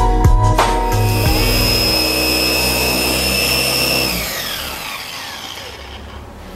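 Background music with a beat, fading out in the first second or two, over the steady whine of a Meguiar's G220 V2 dual-action polisher. About four seconds in the polisher is switched off and its whine falls in pitch and fades as it spins down.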